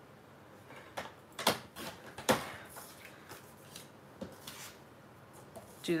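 A sliding paper trimmer cutting a sheet of patterned designer paper at an angle: a few sharp clicks and scrapes of the cutting head on its rail, the loudest a little over two seconds in, then fainter handling clicks.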